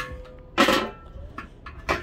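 Steel lid of a Weber kettle grill being hooked into the holder on the side of the bowl: a sharp metal click, a short scrape about half a second in, and another click near the end.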